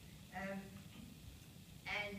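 A woman speaking into a podium microphone: one short drawn-out word, a pause of about a second, then her speech picks up again near the end.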